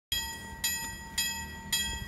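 KLD-43 mechanical level-crossing bell ringing, struck about twice a second with each stroke ringing on: the crossing's warning that it has activated for an approaching train.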